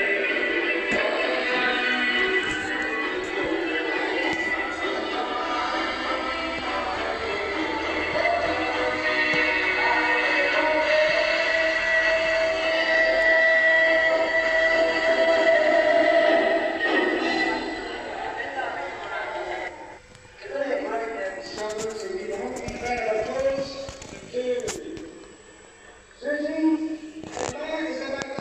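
Music and voices from a VHS tape playing back on the Supra SV-T21DK VCR, heard through the television's speaker. The sound runs continuously for the first two-thirds, then turns choppier with two short drops near the end.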